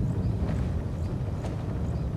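Low, steady rumbling drone from a TV drama's soundtrack, with a few faint clicks scattered through it.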